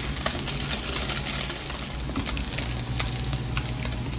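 Slices of canned beef loaf sizzling and crackling as they brown in a nonstick frying pan, with many small pops. A spatula scrapes and taps against the pan as the slices are turned over.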